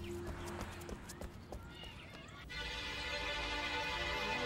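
Footsteps walking away over quiet background music. About two and a half seconds in, a new, fuller music cue of held tones comes in suddenly.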